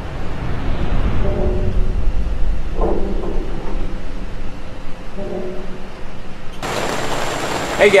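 Intro soundtrack for a logo animation: a deep rumble that builds up, with a couple of short held tones over it. About two-thirds of the way through it cuts to the steady hiss of hard rain on a greenhouse roof.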